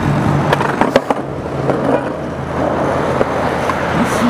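Skateboard wheels rolling over asphalt: a steady rolling noise, with a few sharp clicks from the board in the first second or so.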